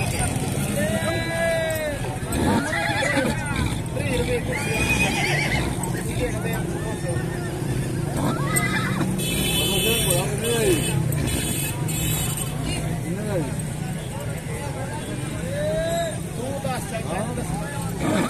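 A horse whinnying, in short calls that rise and fall, amid the chatter of a market crowd over a steady low hum.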